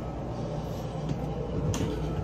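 Boat's air conditioning running in the cabin, a steady low hum with air noise, with a brief knock near the end.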